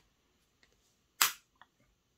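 A single sharp click about a second in, with a faint tick shortly after: the guard of an Erbauer EAPS600 airless spray gun snapping back onto the gun.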